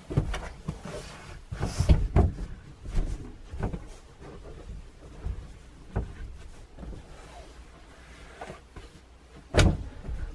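Upholstered seat cushions being lifted, shifted and dropped into place to make up a motorhome's transverse double bed: irregular soft thumps, knocks and rustling, with one sharp knock near the end.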